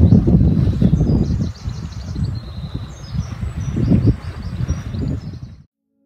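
Wind buffeting the microphone, loudest in the first second and a half and again around four seconds in, with the high, thin notes of a European robin singing behind it. The sound cuts off suddenly shortly before the end.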